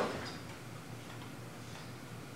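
Quiet room tone in a small church during a pause in speech: a faint, steady low hum with no distinct events.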